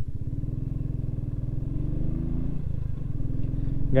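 Motorcycle engine running at road speed under the rider: a steady low thrum whose pitch climbs slightly, then eases back a little past halfway.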